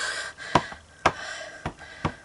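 A short breath, then three light clicks about half a second apart as a plastic Stampin' Pad ink pad is dabbed against a photopolymer stamp to ink it.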